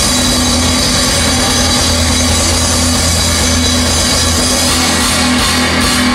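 Live rock band playing an instrumental passage at full volume: drum kit, electric guitars and keyboard, with sustained low bass notes underneath. The full band comes in together right at the start after a sparser drum-led lead-in.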